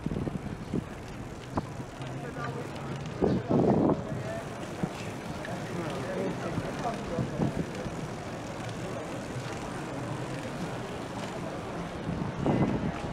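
City street traffic heard from a moving bicycle: a steady low drone of vehicles, with a louder passing rumble about three seconds in.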